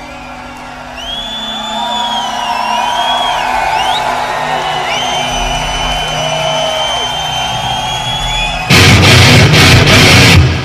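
Rock music playing: a softer passage with long sliding, bending high notes, then the full band comes in loud near the end.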